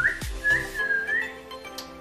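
A woman whistling through pursed lips: a few short notes that slide up and down in pitch, ending a little after a second in. Quiet background music runs underneath.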